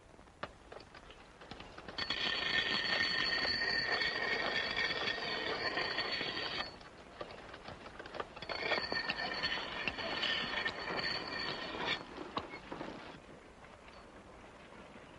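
Steel axe blade being ground on a wheel-driven grindstone: two long rasping, ringing passes, the first starting about two seconds in and running about four seconds, the second shorter, near the end.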